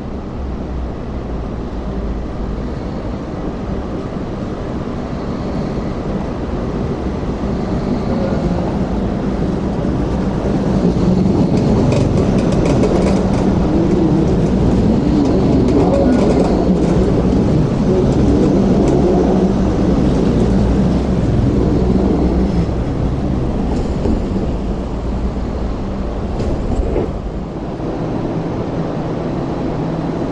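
MTR Light Rail car rolling round a curve and passing close by: its rumble builds, is loudest from about 11 to 22 seconds in, then fades, with a few sharp clicks as it goes past.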